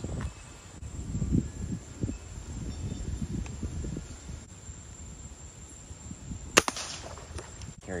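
Low handling noise, then a single sharp rifle shot about six and a half seconds in, the loudest sound here.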